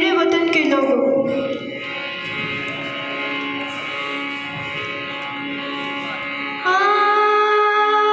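Harmonium playing a quiet introduction of steady held notes. A little over two-thirds of the way in, a girl's singing voice comes in louder over it, holding a long note.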